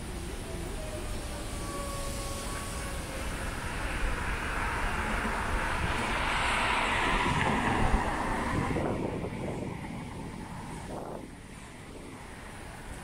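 Road traffic: a car passes on the street, its tyre and engine noise swelling to a peak about two-thirds of the way in and then fading away, over a steady low rumble.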